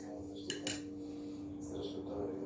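Two light clinks a little over half a second in, about a fifth of a second apart, like a small utensil knocking against a dish, over a steady low hum.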